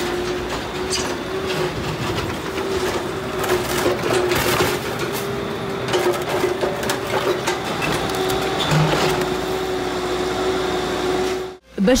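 Hydraulic excavators demolishing block and concrete walls: the machines run with a steady whine of even pitch, while masonry breaks and falls in several crashes.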